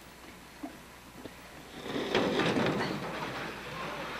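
Small aluminum boat being dragged off the ice and over a wooden dock: a loud grinding scrape of the metal hull begins about two seconds in, after a few light knocks.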